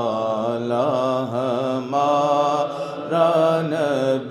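A man's voice chanting an Urdu naat, drawing the words out in long, wavering melismatic notes with brief breaks between phrases.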